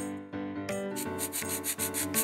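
Pencil scribbling sound effect: a run of quick, evenly spaced scratchy strokes starting about a third of the way in, over gentle piano background music.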